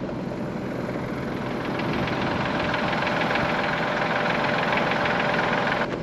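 Case IH Magnum tractor's diesel engine running steadily, a constant drone with a fine rapid pulse, growing slightly louder over the first couple of seconds.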